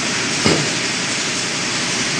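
A steady hiss of background noise, with one short rubbing sound about half a second in as a hand wipes the main-bearing seats in an aluminium engine block.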